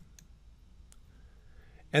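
A computer mouse button clicking once, sharply, about a second in, with a fainter click shortly before it, over quiet room tone.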